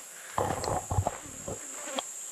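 Steady high-pitched drone of insects in dry bush, with a closer, louder scuffing noise for about a second near the start.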